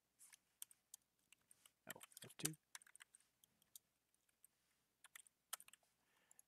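Faint, irregular clicks of computer keyboard keys being typed, with a short spoken word about two seconds in.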